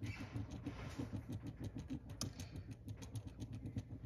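Pen scribbling back and forth on paper while colouring in, a quick, uneven run of many short strokes.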